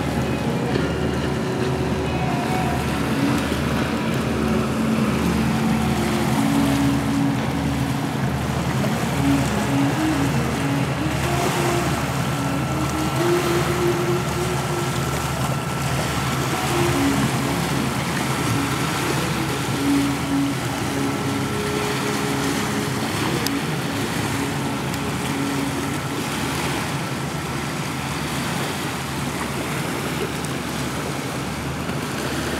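River waves and wind on the water, a steady rush, with quiet background music underneath: a slow melody of short held notes over an even low beat about twice a second.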